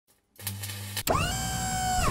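Electric-motor whir sound effect for a lift rising. A low steady hum starts, a click comes about a second in, then a whine rises in pitch and settles into a steady tone, cutting off suddenly.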